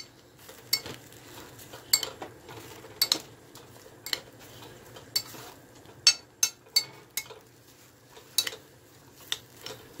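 A spoon stirring mixed vegetables in a glass saucepan, clinking and scraping against the glass about once a second, sometimes twice in quick succession.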